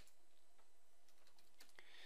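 Faint computer keyboard typing: a few soft, scattered key clicks over a low room hiss.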